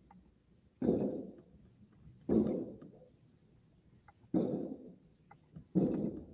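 Aerial fireworks bursting in a grand finale: four dull booms roughly one and a half to two seconds apart, each dying away over about a second, heard muffled through a window.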